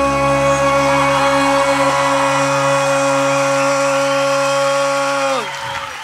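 Live rock band holding a closing chord that bends down in pitch and cuts off about five and a half seconds in, leaving the crowd cheering.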